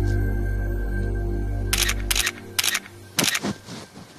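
Soft, sustained background music that drops away about two seconds in. Over it, in the second half, a DSLR camera's shutter clicks about four times in quick succession.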